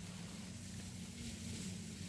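Faint outdoor background ambience: a steady low hum under a soft, even hiss, with no distinct sound events.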